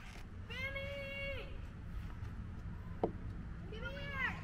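A person's voice making two drawn-out high-pitched calls: one held at a steady pitch for about a second early on, and a shorter rising-and-falling one near the end. A single sharp click falls between them, over a steady low rumble.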